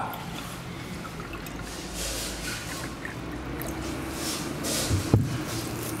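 Water trickling in a thin stream from the spout of a clay moringa jug into a stainless steel cup. About five seconds in there is a single short knock.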